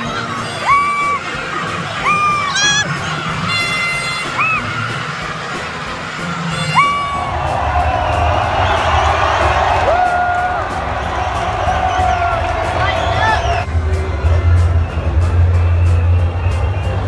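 Large outdoor crowd cheering and shouting, with a string of short, high, held notes blown over it in the first seven seconds. A denser wave of cheering with a low rumble follows.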